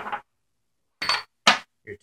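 Metal toothed drive wheels from an RC tank clinking as they are set down on a workbench: two sharp, short clinks about half a second apart, with a little ringing.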